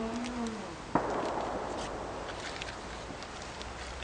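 A single sharp bang about a second in, its noise dying away over about a second, with faint scattered crackling throughout as a sheet of paper burns.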